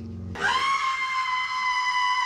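A long, shrill, high-pitched scream, held at one steady pitch for about two seconds. It starts about a third of a second in, as a low droning film score cuts off.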